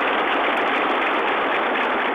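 A large crowd applauding, a steady wash of clapping on an old archival film soundtrack that sounds narrow and muffled.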